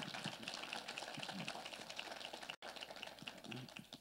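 Small church congregation applauding: a steady patter of many hands clapping that dies away about three and a half seconds in.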